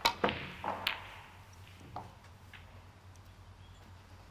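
Snooker shot: the tip of the cue strikes the cue ball with a sharp click, then three more clicks and knocks follow within the first second and a fainter one about two seconds in, as the balls hit each other and the cushions or pocket jaws.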